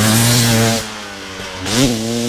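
Dirt bike engine running, easing off a little under a second in, then a short rev that rises and falls in pitch near the end.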